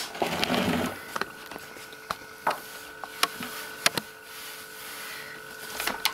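Flour being scattered and spread by hand over a wooden tabletop: a soft rustle in the first second, then scattered sharp taps of the hand on the wood. A faint steady whine runs beneath from about a second in.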